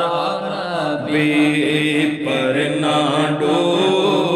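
Male voices chanting an Urdu naat without instruments, holding long notes that bend and slide in pitch.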